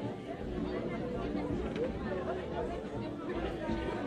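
Crowd chatter: many people talking over one another at once in a full room.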